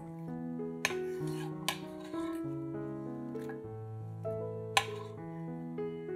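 Soft background music of sustained, slowly changing notes, with three short scrapes of a chef's knife sweeping diced onion across a wooden board into a glass bowl: about a second in, just under two seconds in, and near five seconds.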